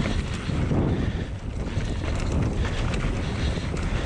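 Wind buffeting the camera microphone over the rolling rumble of knobby mountain-bike tyres on a dry dirt trail, with scattered short rattles and clicks from the bike on the descent.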